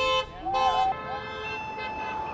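Car horns honking from passing traffic: a short toot as the sound starts, then one long steady honk held for about a second and a half. People are shouting over the horns.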